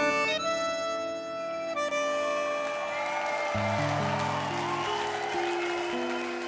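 Bandoneon playing slow, sustained chords in a tango piece, the held notes changing every second or two. Deeper notes join about three and a half seconds in.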